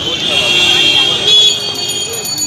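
Busy street noise: several people's voices mixed with road traffic, with a few steady high tones running through it.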